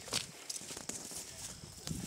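Footsteps of a person walking over grassy ground, with a few sharp taps spaced about a second apart, over faint outdoor background noise.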